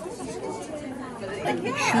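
Indistinct background chatter of several people talking, with a clearer voice rising near the end.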